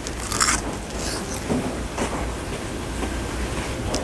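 A crunchy bite into a fried-chicken burger with a crisp fried coating, one sharp crunch about half a second in, followed by softer crunching as it is chewed.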